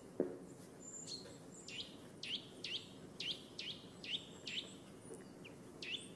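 Birds chirping: a run of short, hooked chirps, about two a second, with a few thin high whistles. A single knock sounds just after the start.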